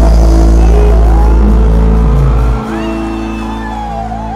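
Live band music from the concert stage: a loud sustained bass note under held keyboard chords, the bass dropping away about two and a half seconds in.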